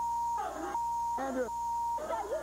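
Censor bleeps, a steady tone of about 1 kHz, sounding three times and blanking out speech, with short snatches of a voice heard in the gaps between them.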